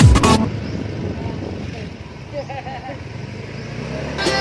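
Background music cuts out about half a second in, leaving steady street noise of passing traffic, with a faint voice heard briefly past the middle.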